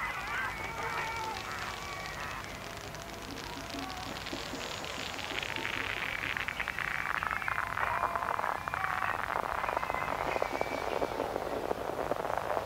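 Electronic dance music from a live club DJ set. After a quieter stretch, a fast roll of percussive hits and noise builds and grows louder through the second half.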